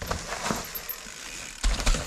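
Mountain bike rolling close past over leaf-covered dirt, tyres crunching with clicking and rattling from the bike, then a heavy low thud a little over one and a half seconds in.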